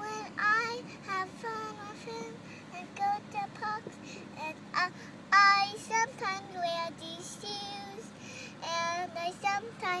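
A young girl singing a made-up song alone, with no accompaniment, in short phrases of held and sliding notes.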